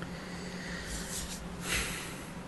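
A man's breath drawn in noisily, twice, in the second half, the second breath louder, as before speaking again.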